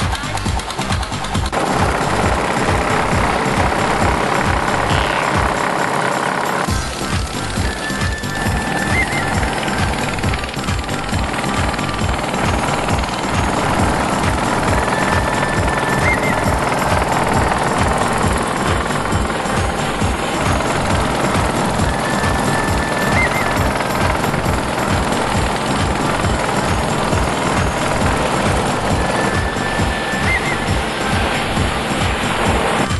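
Boat engine chugging in fast, even beats as the boat moves across the water, with music playing underneath. The chugging drops out for a moment about six seconds in.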